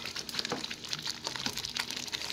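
Tomato stew frying in oil in an aluminium pot, crackling and spluttering with many small irregular pops.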